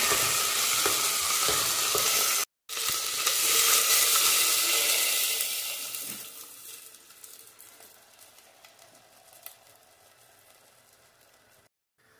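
Shrimp sizzling in a hot pot while a spoon stirs them. After a short break, a hiss rises again and fades away to near quiet over a few seconds, with one faint click near the end.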